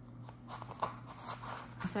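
Soft rustling and a few light taps of a paper planner notebook being slid into a fabric cover and handled by hand.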